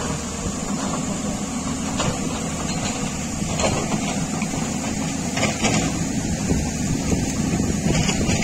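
Diesel engine of a Tata Hitachi 210 Super excavator running steadily at a low pitch, with a few faint knocks in the middle.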